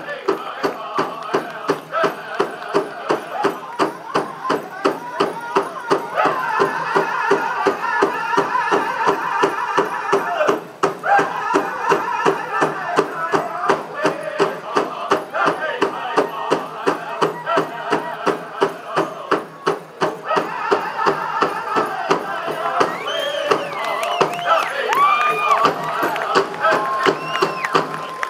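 Powwow drum group singing over a big hand drum struck in a steady, fast beat, about three strokes a second; the voices rise to high gliding calls near the end.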